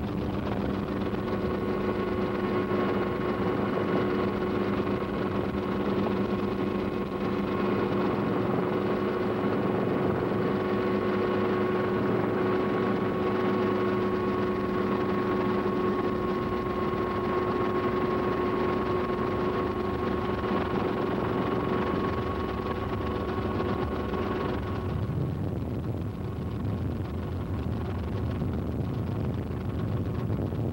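Helicopter engine and rotor noise heard from inside the aircraft: a steady rush with a steady whine over it. About 25 seconds in, the whine stops and a rougher rushing noise is left.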